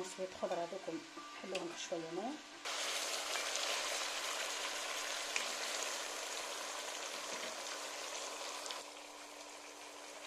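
Food sizzling in a hot pot: a steady hiss that starts abruptly about two and a half seconds in and drops lower near the end.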